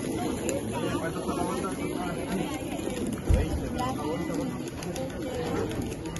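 Open-air market ambience: people talking in the background, with a single low thump about three seconds in.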